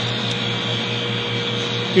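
Eppendorf 5402 refrigerated microcentrifuge running with its rotor at 7,000 RPM: a very quiet, steady hum with a low drone and a thin high whine.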